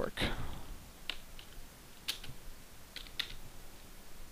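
A handful of separate computer keyboard keystrokes, a second or so apart and some in quick pairs, as a value is typed into a field.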